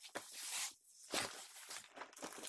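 Rustling and brushing of an empty black fabric sandbag being handled and folded, with a stronger swell of rustle about a second in.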